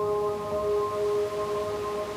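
A bell-like tone in the background music, struck just before and ringing on steadily, with several clear pitches sounding together over a soft wash of ambient sound.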